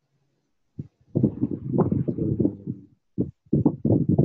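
Indistinct, muffled talking over a voice call, starting about a second in and breaking off briefly near three seconds. The words cannot be made out.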